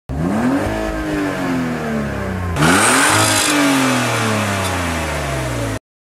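Car engine revved twice while parked: each rev climbs quickly and the pitch then falls slowly back toward idle. A loud hiss comes in with the start of the second rev, about two and a half seconds in, and the sound cuts off abruptly near the end.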